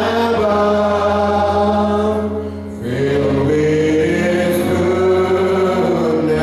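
A group of voices singing a slow hymn in long held notes, with a brief break between phrases about two and a half seconds in, over a steady low accompaniment.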